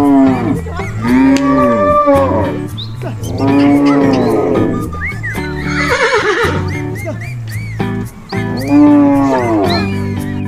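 Cow moo sound effects, several long drawn-out calls, over background guitar music, with a horse whinny about six seconds in.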